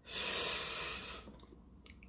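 A person's long, hissy breath out, lasting about a second and fading away.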